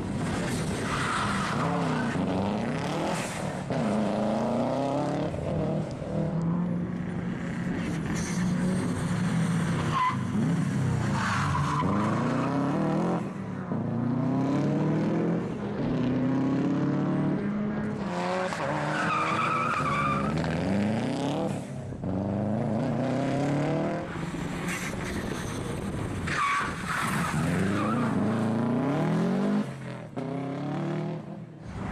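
Rally car engine revving hard and dropping again and again as it is driven through tight turns, the pitch climbing and falling with each burst of throttle and gear change, with tyre squeal at times.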